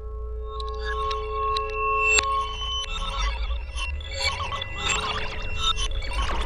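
Electroacoustic music built from wind chimes: held ringing tones over a low rumble, joined about half a second in by a growing, dense cluster of short high chime strikes, with one sharp strike about two seconds in.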